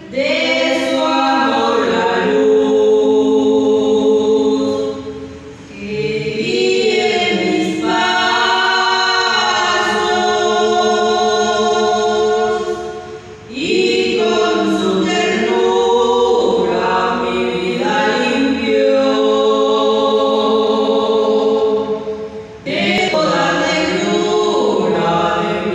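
A group of young people singing a Spanish-language hymn together in long sustained phrases, with brief pauses between phrases about every eight seconds.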